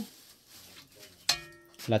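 A single metal clink with a brief ring about a second and a half in, as a metal spoon knocks against a pot of simmering soup.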